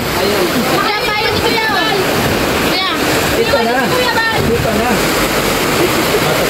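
Heavy rain pouring down, a steady rushing hiss, with people's voices talking over it.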